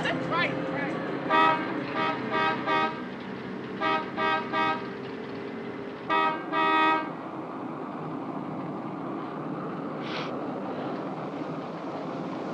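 Car horn honking in short repeated blasts: a quick run of about five, then three, then two longer ones, over the steady drone of a car driving on the highway.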